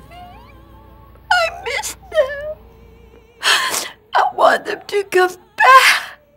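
A woman crying hard: a string of pitched, breaking cries and breathy sobs, the last one the loudest.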